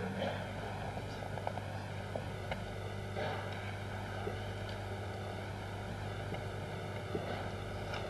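Steady low electrical hum and hiss, with a few faint, short knocks scattered through it.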